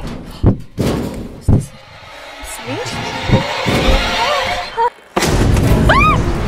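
Horror-film sound design: several heavy thumps in the first second and a half, then a swelling tension score with gliding tones that drops out for a moment before a sudden loud jump-scare burst, with a rising shriek near the end.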